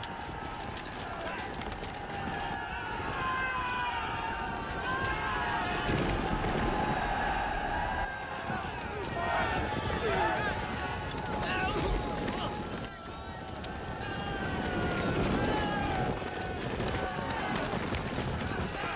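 Film battle-scene soundtrack: many soldiers shouting and yelling at once, with no clear words, over a dense, noisy din.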